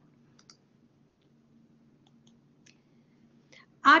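Near silence: a faint low hum with a few soft, scattered clicks.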